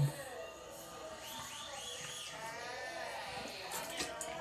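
A person gargling mouthwash, voicing a wavering, warbling gurgle in the throat for a couple of seconds. There is a short thud at the very start.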